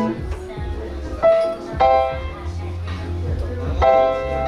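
Upright piano being played: a chord dies away at the start, a quieter stretch follows, then single notes about one and two seconds in over a low held bass note, and a full chord is struck near the end.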